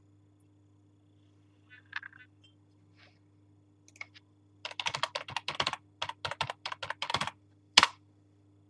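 Typing on a computer keyboard: a quick run of about a dozen keystrokes in the second half, ending with one louder key press.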